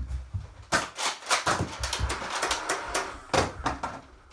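Nerf blaster fight: a rapid, irregular run of sharp clicks and clacks, with a thud at the start.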